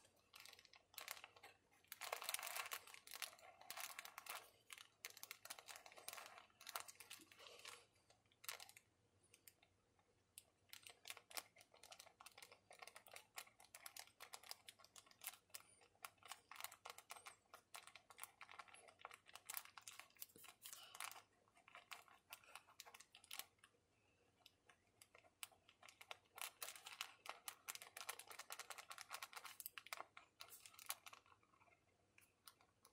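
Fountain pen nib scratching on paper while words and loops are written out, faint and in quick runs of short strokes, with a couple of brief pauses.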